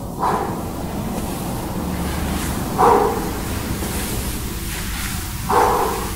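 A man's short voiced exhales as he works out, three of them about two and a half seconds apart, in time with repeated reverse lunges and kicks.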